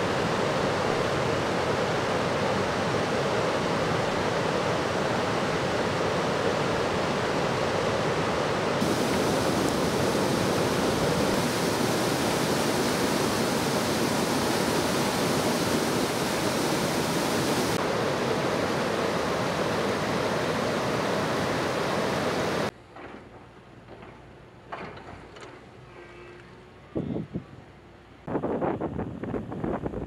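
Glacial meltwater rushing in a steady, loud stream, which cuts off abruptly about two-thirds of the way through. A much quieter stretch follows, with a few louder surges near the end.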